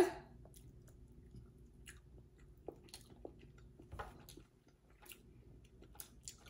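Faint chewing of a soft, slimy lemon superfood snack bar, with scattered small clicks and smacks of the mouth.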